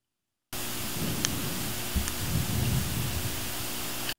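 A steady burst of static-like noise with a low hum under it, cutting in abruptly about half a second in and cutting off abruptly at the end, with two faint clicks in the first half.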